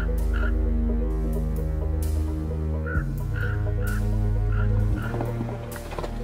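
Sustained low, ominous music chords, shifting about halfway through and again near the end, with two runs of short, quickly repeated croaking calls of ravens.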